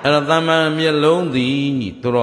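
A Buddhist monk's voice intoning in a chant-like way, one long phrase held at a steady pitch that drops away near the end.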